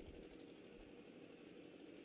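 Near silence: faint room tone in a pause between spoken sentences.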